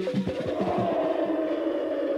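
Station ident jingle: a few rhythmic electronic-music notes that give way, about half a second in, to a single held chord that sustains steadily.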